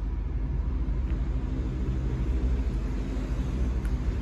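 A vehicle engine running steadily at idle: a low, even rumble.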